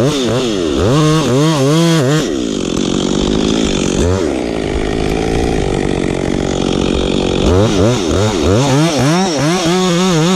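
Newly rebuilt chainsaw revved up and down in quick bursts, then running at a steady speed for several seconds, then revved in quick bursts again near the end.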